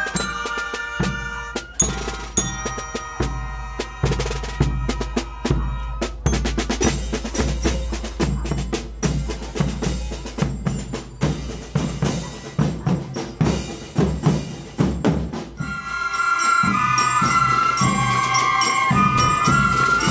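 Youth koteki fife-and-drum marching band playing: a percussion-led passage of bass drum, snare, cymbals and bell lyre. In the last few seconds fifes and melodicas take up a sustained melody over the drums.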